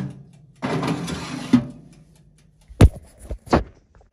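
A frying pan being put under an oven grill: a sharp click, a second-long metal-on-metal scrape as the pan slides in, then two heavy thuds near the end.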